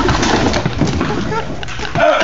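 A man groaning in pain after being hit in the groin.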